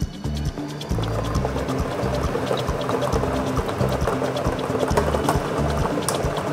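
Lottery balls clattering as they tumble in a spinning clear drawing-machine drum, a dense rattle setting in about a second in, over background music with a steady beat.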